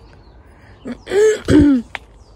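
A woman clearing her throat in two quick rough pushes, about a second in.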